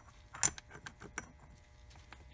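A few light metallic clicks and clinks of steel Shovelhead transmission gears and the sliding dog being handled on the mainshaft. The clearest clink, with a brief high ring, comes about half a second in, followed by a few smaller ticks.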